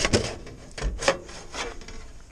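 Metal slide hatch at the base of a riveted steel grain silo being dragged open by hand: a series of short metal-on-metal scrapes, the loudest about a second in.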